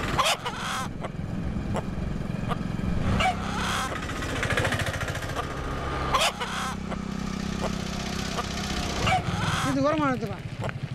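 A motorcycle engine running steadily in a film soundtrack, its drone changing pitch at scene cuts, with a man's voice shouting near the end.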